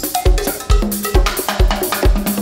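Live band playing an instrumental afro-reggae groove with drum kit, percussion and bass, the kick drum landing a little over twice a second under stepping bass notes.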